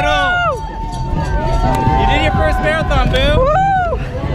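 People's voices talking over the chatter of a crowd outdoors.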